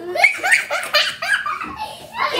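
A child laughing in a quick string of high-pitched bursts that tail off after about a second.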